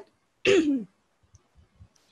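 A woman clearing her throat once, a short sound about half a second in with a voiced part that falls in pitch.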